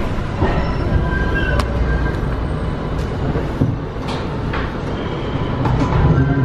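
Subway train running through a tunnel, heard from inside the car: a steady low rumble with thin high tones over it and scattered sharp clicks.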